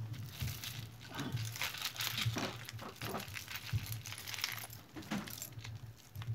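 A heap of metal costume jewelry (chains, earrings, beads) jangling and clinking as hands rummage through it, a steady run of small rattles and clicks.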